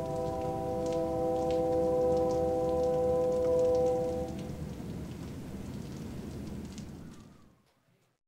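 A train's multi-tone horn sounds one held chord for about four seconds over the low rumble of a train, and the rumble then fades away to silence near the end.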